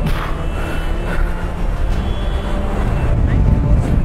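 Loud, steady low rumble of wind buffeting the microphone, with breaking surf behind it.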